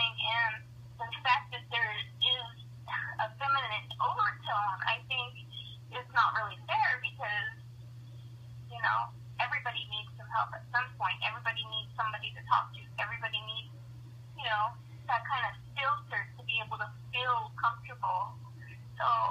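A person talking throughout in a thin, narrow-band voice, as heard over a telephone line, with a steady low hum underneath.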